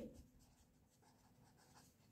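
Faint scratching of a marker pen writing on paper in a series of short strokes.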